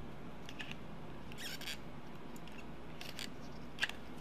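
Paper being handled, a few short faint rustles and scrapes, with one sharper click near the end, over a steady low hum.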